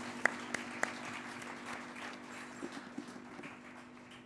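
Small café audience applauding at the end of a piece, thinning and dying away, with a few sharp single claps in the first second. Under it a low held synth tone lingers and fades.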